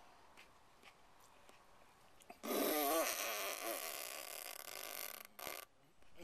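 A man laughs under his breath about two and a half seconds in: a short low voiced chuckle that trails into a long hissing exhale of about three seconds, his reaction to the heat of a habanero-type chile he is eating.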